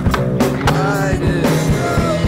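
Music with a steady beat and a singing voice, over a skateboard popping and landing on stone paving and its wheels rolling.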